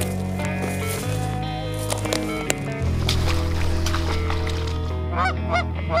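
Geese honking, a quick run of calls near the end, over background music with steady low notes.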